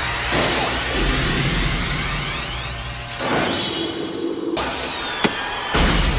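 Anime battle sound effects of a blast and teleport: a low rumble under several whooshing tones that rise to a shrill pitch, cutting off suddenly about four and a half seconds in, followed by a sharp click. Dramatic background music plays under it.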